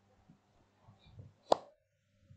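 A single sharp tap about one and a half seconds in, with a few faint soft handling sounds before it.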